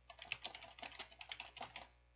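Computer keyboard being typed on, a faint quick run of light key clicks.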